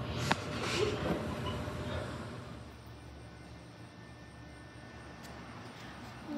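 Faint room tone: a low steady hum. In the first two seconds there is one sharp click and a little faint, fading voice or laughter.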